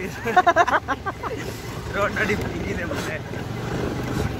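Motorcycle engine running steadily under wind and road noise while riding, with a voice briefly in the first second.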